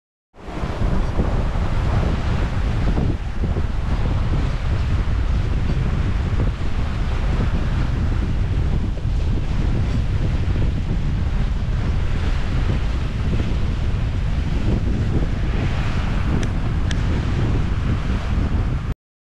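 Wind buffeting the microphone over water rushing and splashing along the hull of a sailboat under way through choppy water, a loud, steady noise.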